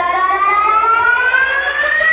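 A siren-like electronic riser in the dance music: one tone climbing steadily in pitch as a build-up.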